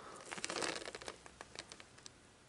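Soft crinkling and rustling handling noise, a quick run of faint crackly clicks lasting about a second and a half, as a bearded dragon is held and handled.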